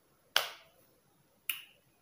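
Two sharp clicks about a second apart, the first the louder, from a clip-on earring being clipped onto the earlobe.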